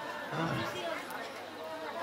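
Faint chatter of other people's voices in the room, well below the level of the lecturer's amplified speech.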